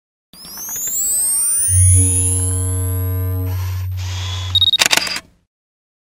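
Produced logo-intro sound effect: several rising, sweeping tones over a low steady hum build up, then end about four and a half seconds in with a short high beep and a quick run of camera shutter clicks.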